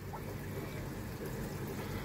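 Faint, steady trickle of aquarium water.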